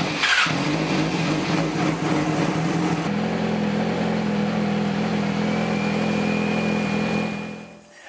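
2009 Yamaha YZF-R6's inline-four engine idling steadily just after being started, warming up. The note changes about three seconds in, and the sound fades out near the end.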